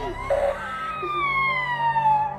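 A young girl's long, high wail of fright that falls steadily in pitch, starting about half a second in.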